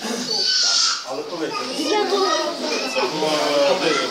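Many people talking at once in a crowded room, a dense hubbub of overlapping voices, with a high-pitched voice standing out about half a second in.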